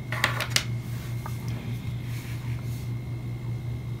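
A few quick, light clicks near the start from a small plastic-ended USB charging cable being handled, with one more faint click a second later, over a steady low hum.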